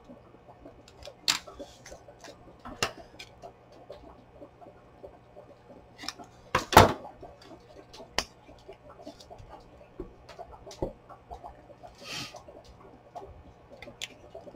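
Paper and small craft tools handled on a wooden tabletop: scattered light taps, clicks and paper rustles, with one louder knock about seven seconds in.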